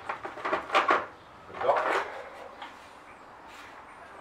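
Plastic and paper packaging rustling and crinkling as a robot mop's charging base is pulled out of its box, in two bursts within the first two seconds.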